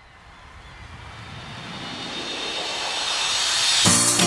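A noise swell with no clear pitch, growing steadily louder throughout: the lead-in of the soundtrack. A Latin dance song with a beat starts right at the end.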